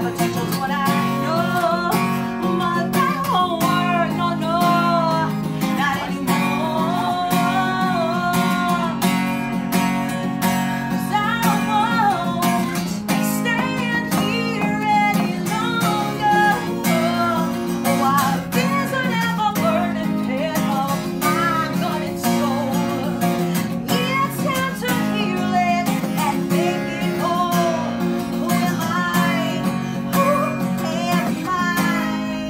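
A woman singing live while strumming a Taylor acoustic guitar.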